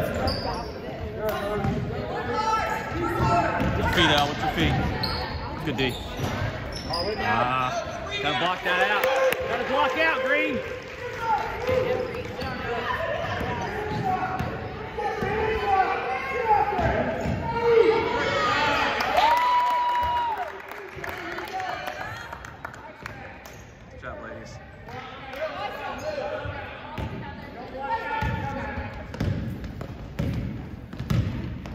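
Basketball being dribbled on a hardwood gym floor, with indistinct shouting from players and spectators echoing in a large gym. A short steady tone sounds about two-thirds of the way through.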